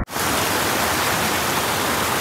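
Swollen, muddy brook rushing and splashing over boulders: a steady, dense rush of water that cuts in abruptly at the start.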